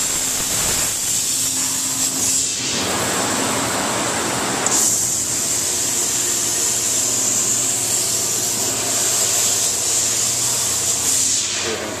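Bystronic BYLAS 3012 laser cutting machine running while cutting stainless steel sheet: a loud, steady high hiss with a low hum beneath. About three seconds in, the high hiss gives way to a broader rush for about two seconds, then comes back.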